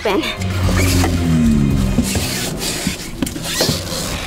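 Background music in which a low tone slides downward through the first two seconds, followed by a few light clicks or knocks.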